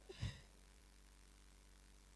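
Near silence with one brief soft puff a fraction of a second in, like a short breath or exhale on the microphone.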